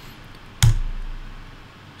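A single sharp keystroke on a computer keyboard about half a second in: the Return key pressed to run a typed terminal command.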